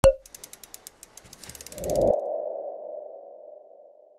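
Logo-reveal sound effect: a sharp hit, then a run of quick ticks at about ten a second, then a low thud about two seconds in under a ringing ping-like tone that fades slowly.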